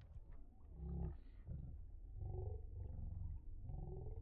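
Slowed-down slow-motion audio: the sound from the boat is pitched down into deep, drawn-out low rumbles, about four of them, muffled with almost no treble.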